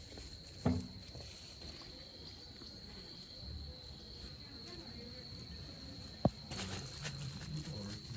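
Insects trilling outdoors at one steady high pitch, with two sharp knocks, one about a second in and one just past six seconds.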